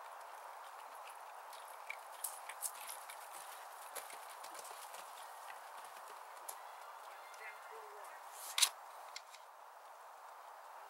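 Hoofbeats of a horse cantering on a dirt trail, heard as scattered short thuds, with one louder thud about three-quarters of the way through.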